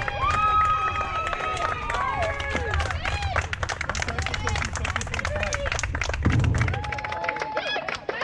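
Teammates and spectators shouting and cheering, with scattered clapping, greeting a softball home run at home plate.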